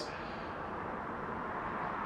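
Steady, even low background noise with no distinct event: garage room tone in a pause between speech.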